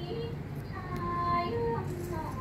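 Thai classical song for a chui chai dance: a high voice sings long held notes that step and glide slowly from one pitch to the next.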